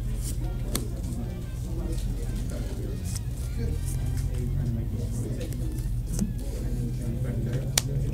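Murmur of other voices in the room over a steady low hum, with a few sharp clicks of trading cards being laid down on a playmat.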